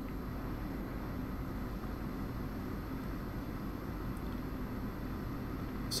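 Steady low hum and hiss of room noise, like a fan running, with no distinct events. Nothing from the soldering work stands out.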